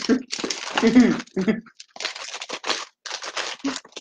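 Plastic snack packaging crinkling and rustling as packets are handled and pulled from the box, with voices talking in the first part.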